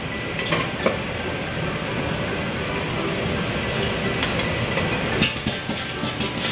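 Commercial wok range and kitchen extraction running with a steady roar, with a short clink of metal on metal about a second in.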